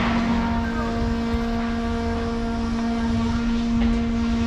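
Construction-site machinery running steadily: a constant engine hum over a low rumble.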